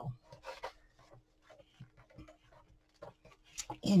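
Faint, scattered rustling and rubbing of fingers pressing jute rope into a hot-glued corner of a cardboard box, over a faint steady hum.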